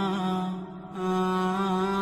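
Background vocal music: a single voice chanting long, held notes with slow pitch bends and no words, breaking off briefly just under a second in before carrying on.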